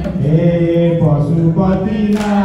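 Male voices chanting a Hindu devotional song in long held notes, with a short break about a second in.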